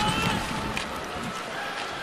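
Ice hockey arena ambience during live play: a steady crowd noise, with a few sharp clicks from sticks and puck on the ice.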